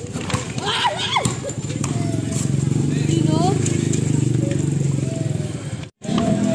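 Players shouting during an outdoor street basketball game. From about two seconds in, a loud, steady low din runs on and then cuts off abruptly just before the end.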